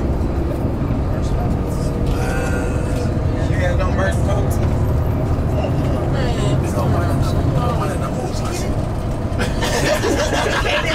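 Tour coach driving along, heard from inside the cabin: a steady low engine and road rumble, with faint voices in the background.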